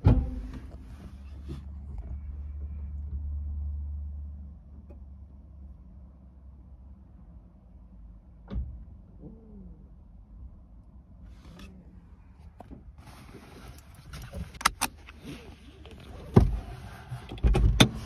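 Knocks, clunks and rustling from the camera being handled and moved, loudest in the last few seconds. Earlier there is a low steady hum lasting a few seconds and a few isolated clicks.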